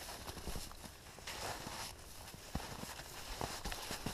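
Footsteps of hikers walking on patchy snow and forest floor, with scattered short taps and knocks.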